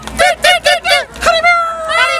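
A high, nasal puppet voice making a quick run of honk-like calls, about five a second, then holding one long drawn-out note from about a second in.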